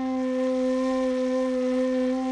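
A single long, breathy flute note held at one steady pitch, the opening of the closing music.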